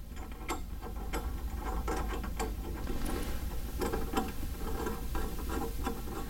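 Faucet diverter adapter being screwed by hand onto the threaded tip of a chrome faucet: a run of small, irregular clicks and ticks as the threads are turned hand tight.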